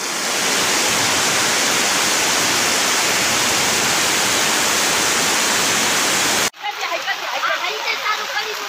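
Fast-flowing floodwater rushing down a street, a loud, steady rush of water that cuts off abruptly about six and a half seconds in. After the cut, people's voices over quieter running water.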